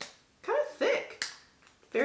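A woman's short wordless vocal sound, like a two-note hum, between sharp plastic clicks from the squeeze bottle of hair mask she is handling: one click at the start and a sharp snap about a second in.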